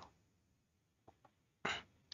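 Near silence with a couple of faint ticks, then a short intake of breath from the presenter near the end.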